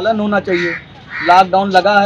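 A man talking in Hindi, with a crow cawing twice behind his voice.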